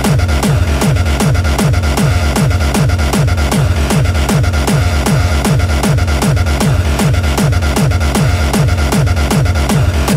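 Hardstyle dance music: a distorted kick drum on every beat, each hit sliding down in pitch, about two and a half beats a second under a dense synth layer.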